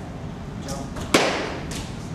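A single sharp smack about a second in, followed by a short echo off the room, with softer swishes before and after it.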